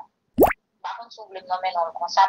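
A single short pop that sweeps quickly upward in pitch, about half a second in, set between gaps of dead silence, then a voice talking again.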